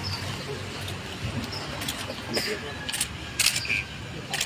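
Camera shutters clicking several times in the second half, a few quick clicks about half a second apart, over low voices in the room.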